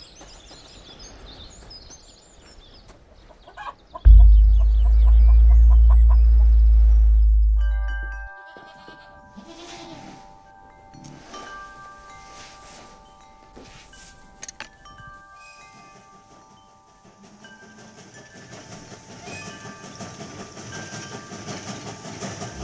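Film sound design: faint outdoor ambience, then a loud deep rumble lasting about four seconds that fades out. It is followed by several sustained, overlapping chime-like ringing tones, and a soft rising hiss near the end.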